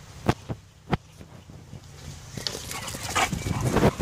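Two dogs running up a grass path toward the camera: a rustling noise builds as they come close near the end, with a short dog vocalisation about three seconds in. Three sharp clicks sound in the first second.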